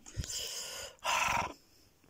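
A man's breathy sigh: a softer breath in, then a louder rasping breath out about a second in, with a light bump of the handheld phone camera near the start.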